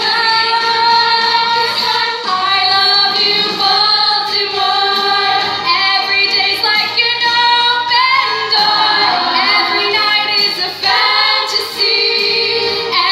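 A youth stage cast singing together in chorus, mostly female voices.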